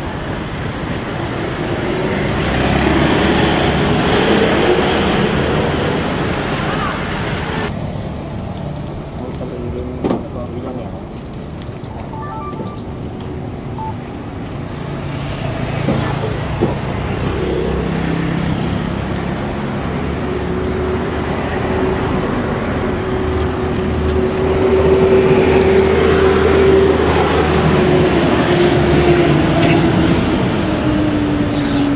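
Road traffic with motor scooters and cars passing close by. Engines run steadily, and one engine note holds steady through the last third. A couple of short knocks are heard, along with voices in the background.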